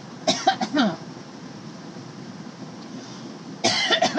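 A person coughing: a short cluster of coughs about a quarter of a second in, over a steady background hum. A voice starts up near the end.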